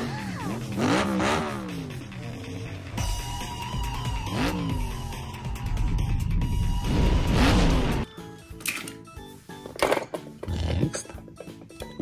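Cartoon film soundtrack: music with animated cars' engines revving, pitch rising in sweeps about four and seven seconds in over a heavy rumble, then thinning out to scattered lighter sounds in the last few seconds.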